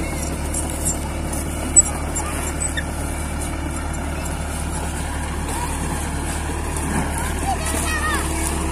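Caterpillar E70 excavator's diesel engine running steadily at a low hum, with one brief sharp click a little under two seconds in.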